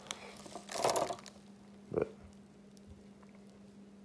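A brief rustle of plastic packaging about a second in as a valve spring is lifted out of its bubble-wrapped box, over a faint steady hum.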